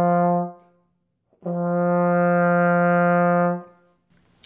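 Trombone playing the F in the middle of the bass clef staff twice, as air starts: each note begins on the breath alone, with no tongue attack, and swells smoothly in. The first note ends about half a second in; the second comes in about a second and a half in and is held steady for about two seconds.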